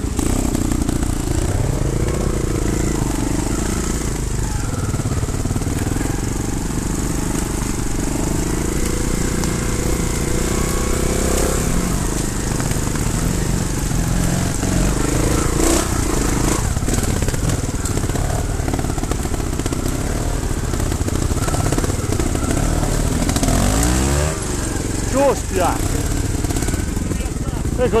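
Trial motorcycle engine running at low revs while ridden slowly over rough ground, its pitch rising and falling with small throttle changes.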